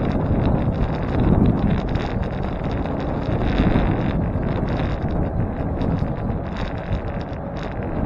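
Wind buffeting the microphone of a bicycle-mounted camera while riding, over a steady road rumble that swells twice, with light rattles throughout.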